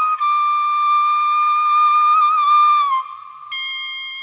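Instrumental interlude of a Malayalam devotional song: a flute holds a high, steady melody line with small ornaments and slides down at about three seconds. Just after, a brighter note with many overtones comes in and fades.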